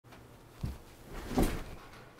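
A person settling into an office chair: a soft knock about half a second in, then a louder shuffle of the seat and body about a second and a half in.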